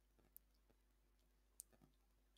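Near silence: faint room tone with two faint short clicks, one near the start and one near the end.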